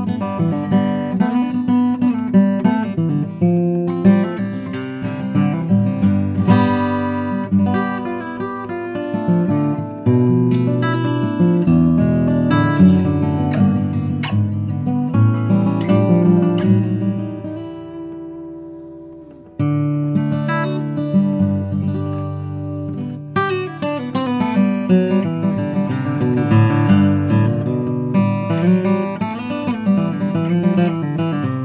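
Bourgeois OM cutaway acoustic guitar with a torrefied Adirondack spruce top and Indian rosewood back and sides, played fingerstyle: a continuous run of picked notes and chords. A little past halfway a chord is left ringing and fading for about three seconds before the playing resumes.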